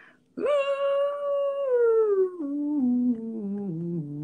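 A woman singing a wordless vocal line: a long held note that sinks slightly, then a run stepping down note by note to a low pitch.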